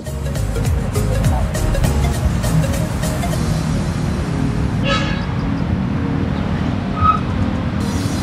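Background music over a steady rumble of road traffic, with a car horn tooting briefly about five seconds in.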